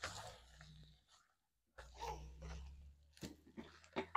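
A spoon stirring and scraping tomato sauce in a metal pot on a portable camp stove, a few faint intermittent scrapes and knocks.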